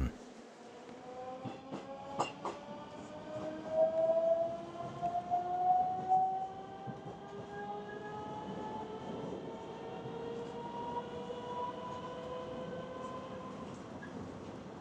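Electric metro train accelerating: the traction motors whine in several tones that rise slowly and steadily in pitch over rail noise, with a couple of sharp clicks about two seconds in.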